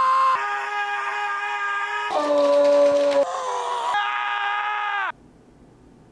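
A string of long, held yells, each at a steady pitch, with the pitch jumping to a new note every second or two. The last yell sags in pitch and cuts off about five seconds in.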